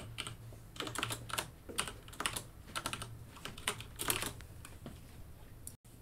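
Computer keyboard typing, irregular runs of keystrokes, with a faint steady hum beneath. The sound cuts out completely for a split second near the end.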